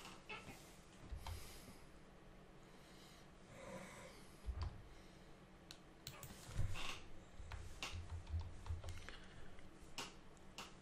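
Faint scattered clicks of a computer mouse and keyboard being worked, with a few dull low knocks among them.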